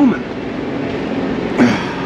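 A steady mechanical hum with a constant low tone, and one brief sharp sound about one and a half seconds in.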